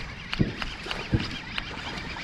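Fishing reel being cranked while a hooked bass is fought in, giving irregular clicks with a couple of low thumps about half a second and a second in.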